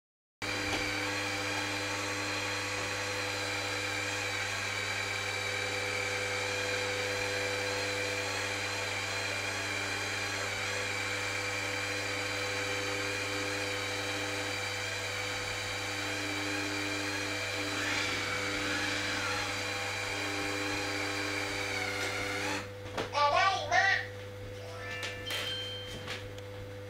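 Robot vacuum cleaner running: a steady whine from its suction fan and brush motors. It stops about three-quarters of the way through and is followed by a short run of electronic chirps and a few short beeps, as the robot settles at its charging dock.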